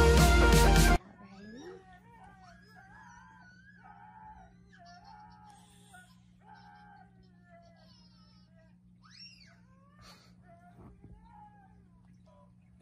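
Loud electronic music with a heavy bass cuts off about a second in. After it come faint, short, high-pitched calls that bend up and down, playing from a video on a phone's small speaker, over a steady low hum.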